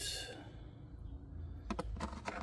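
Quiet handling of a small plastic pressure-switch housing by hand, with a short breath at the start and two sharp plastic clicks near the end.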